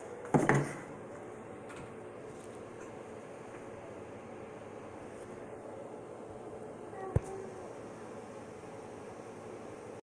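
Faint steady room tone with one short thump about half a second in, as the phone is handled, and a single sharp click about seven seconds in.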